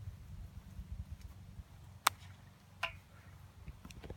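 Quiet open-air background with a low, uneven rumble, broken by one sharp click about halfway through and a brief high chirp-like sound just before three seconds.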